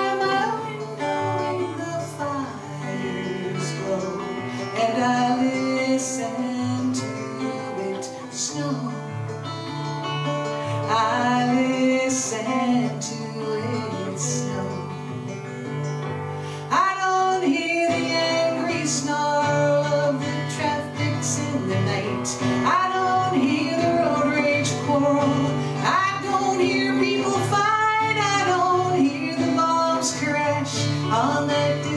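A woman singing a slow song to her own acoustic guitar, played live through a small PA. The music gets louder about halfway through.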